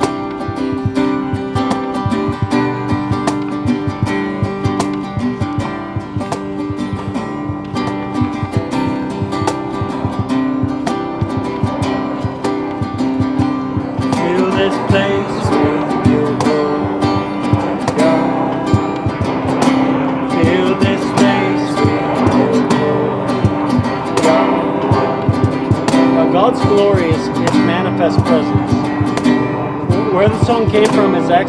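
Acoustic guitar strummed steadily in a slow worship song, with a man's voice singing over it from about halfway.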